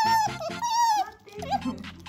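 Asian small-clawed otter giving two loud, high-pitched calls of about half a second each, then a shorter, fainter call. Background music comes back in during the second half.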